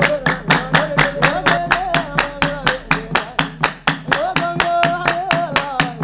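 A group of men chanting a devotional refrain in unison over steady rhythmic hand-clapping, about four claps a second. The voices hold long, gently wavering notes between the claps.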